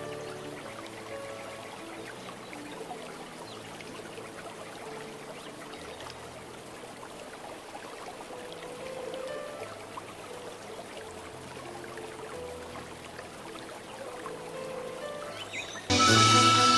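Quiet background music of slow, held chords over a steady rushing hiss like running water.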